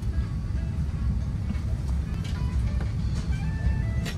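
Steady low rumble of an Airbus A350 passenger cabin, with faint background music over it.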